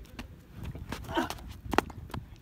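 Footsteps on dry dirt and phone handling noise over a low wind-like rumble, with scattered clicks and a brief faint voice about a second in.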